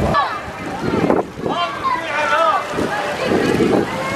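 Voices of people talking and calling out in short, rising and falling phrases, with gusts of wind on the microphone.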